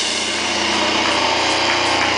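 Distorted electric guitar and bass held in one steady, buzzing chord through the band's amplifiers, with no drums playing.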